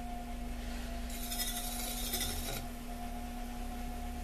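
Electric potter's wheel running with a steady hum, while a hand tool rubs against the spinning wet clay, a hissing rub from about one second in to about two and a half seconds.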